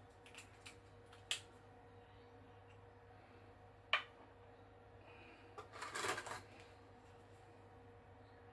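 Light clicks and a short metallic rattle of copper Hornady 162-grain ELD-Match bullets being lifted off and set onto a small digital scale's pan, with the scale's plastic lid being handled; a sharp click comes about four seconds in and a longer rattle about six seconds in.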